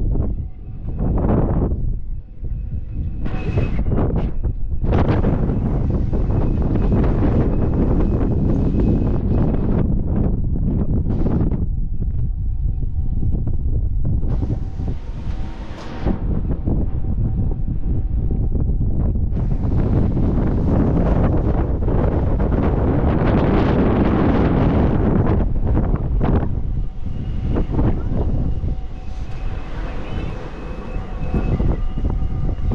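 Strong wind buffeting the phone's microphone: a loud, low, noisy rush that swells and eases in gusts, dropping away briefly a few times.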